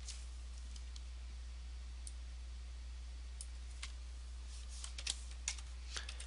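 Faint, scattered clicks of a computer keyboard and mouse, about a dozen at irregular intervals and most of them in the second half, over a steady low hum.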